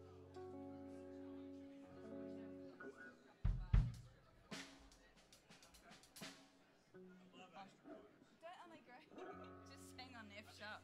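Quiet noodling by a live band between songs: soft electric guitar chords ring and fade, a deep thump comes about three and a half seconds in, and a few sharp taps follow. Faint voices are heard near the end, along with a low held bass note.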